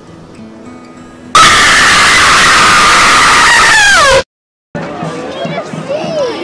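Soft music, then a bit over a second in a sudden, very loud scream sound effect with a harsh, noisy edge. It is held for about three seconds, falls in pitch as it ends, and cuts off abruptly. After a brief silence, voices come in.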